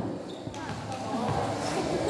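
Basketball game ambience: faint voices of players and onlookers, with a basketball bouncing on a concrete court.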